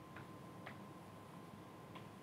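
Faint, sparse ticks of chalk tapping and scratching on a blackboard as a word is written, over quiet room tone.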